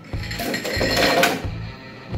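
Ice cubes poured from a glass into a blender jar partly filled with liquid, clattering in for about a second and a half, loudest near the end of the pour.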